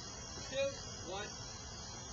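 Low, steady background hiss with two faint, brief voice sounds, about half a second and a second in.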